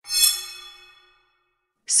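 A single bell-like chime sound effect, struck once and ringing away over about a second, marking a slide transition.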